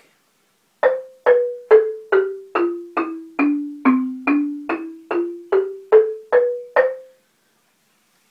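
Homemade wooden-bar marimba struck with mallets, playing a C major scale: fifteen notes at about two a second, stepping down one octave and back up again, each note dying away quickly.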